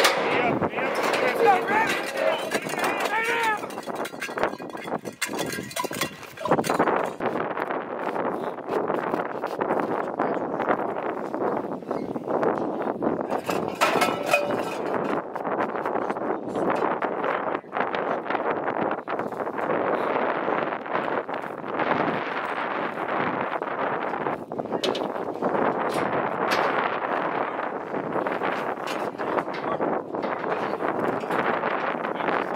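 Indistinct talk of several people, no clear words, running on throughout, with a few sharp knocks.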